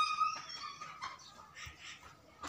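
A high-pitched animal whine, soft and wavering, through the first second or so.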